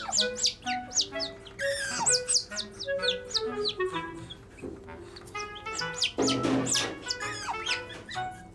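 Otter pups chirping over and over in short, high, falling calls, with a couple of harsher squeals, over light background music with a plucked, stepping melody.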